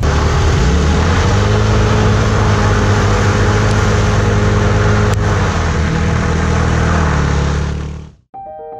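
Small automatic scooter engines held at high revs while their rear wheels spin in loose dirt in a standing burnout. The pitch steps up about a second in, holds steady, then fades near the end.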